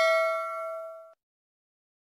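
Notification-bell chime sound effect from a subscribe-button animation: a struck-bell ding ringing and fading, then cutting off suddenly about a second in.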